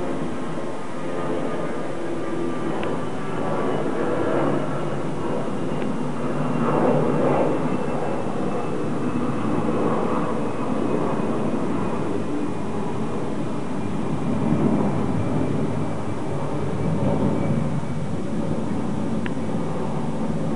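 Jet airliner passing overhead: a steady engine noise that swells a little midway, with a faint high whine slowly falling in pitch as it goes by.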